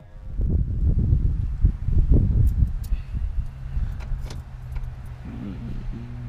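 Camera being handled inside a pickup truck cab: loud rough rumbling and knocking for the first few seconds, with a few sharp clicks and jingling like keys. After that the truck's engine idles with a steady low hum.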